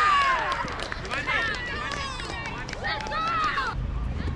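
Young players' high-pitched shouts and calls ring out across the field, loudest at the start, then in scattered short bursts. Near the end a steady low rumble comes in.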